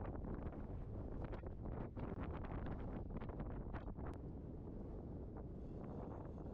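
Strong wind buffeting the microphone on the deck of an anchored sailboat: a steady low rumble. Light ticks and rustles come through it during the first four seconds, then die away.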